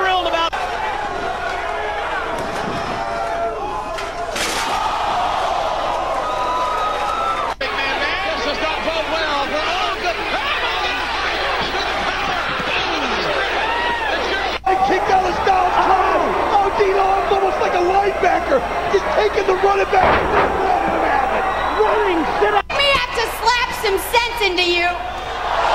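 Pro wrestling TV broadcast audio: commentators talking over arena crowd noise. It cuts abruptly between clips three times.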